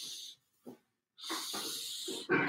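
Felt-tip marker drawn across a flip-chart paper pad in long straight strokes, a steady hiss: one stroke ends shortly after the start and the next begins a little past halfway.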